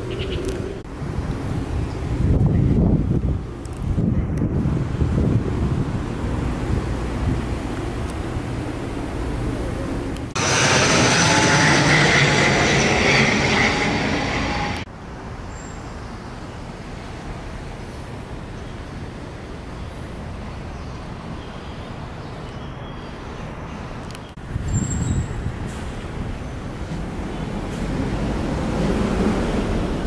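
Outdoor city background noise: a steady low rumble of road traffic, with a louder rushing noise that starts abruptly about ten seconds in and stops just as abruptly some four seconds later.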